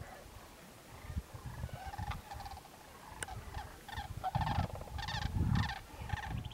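A large flock of sandhill cranes calling, many rolling, trilling calls overlapping and growing denser in the second half. Bursts of low rumbling noise come and go beneath the calls.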